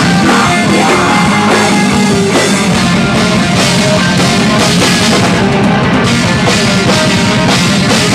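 Live metal band playing an instrumental passage: electric guitars and a drum kit, loud and continuous.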